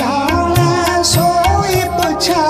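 Shabad kirtan music: a melodic line over tabla, whose bass drum strokes glide up and down in pitch in a steady rhythm.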